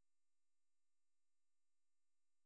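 Near silence: only a very faint, steady background hum.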